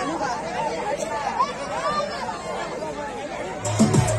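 An audience's voices: many people chattering and calling out at once. Dance music with a heavy bass beat starts just before the end.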